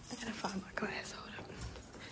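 A woman speaking softly, close to a whisper, with quiet hallway room tone.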